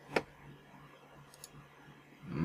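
A single sharp computer click that sends a typed chat message, followed by a couple of faint ticks about a second later.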